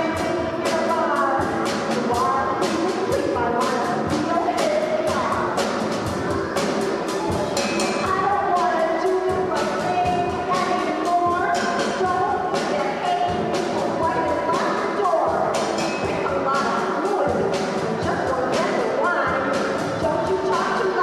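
Live rock band: a woman singing lead over electric guitar and a drum kit, which keeps a steady beat with cymbal strikes about three times a second.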